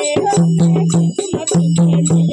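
Dholak beaten by hand in a fast, steady rhythm, its deep bass stroke recurring about once a second, with small brass hand cymbals ringing along.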